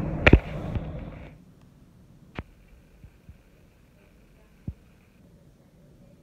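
A sharp knock of a handheld phone being grabbed and covered, over car cabin road rumble that cuts off abruptly about a second and a half in. Then a quiet room with a few faint clicks.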